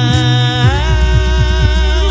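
Male a cappella vocal quartet singing a sustained chord, the lead voice holding a long note with vibrato over low vocal-percussion thumps. About two-thirds of a second in the chord shifts and the bass voice drops to a deep held note, and the whole group cuts off together at the end.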